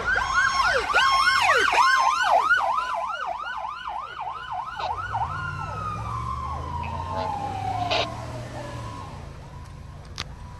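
Fire engine siren on a fast yelp, about three to four sweeps a second, passing close by and heard from inside a car. After about five seconds the yelp stops and a single siren tone glides slowly down in pitch, with the truck's engine rumbling low underneath. There is a short knock at about eight seconds.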